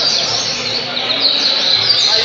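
Double-collared seedeater (coleiro) singing: a fast, continuous run of short high notes, each sliding downward.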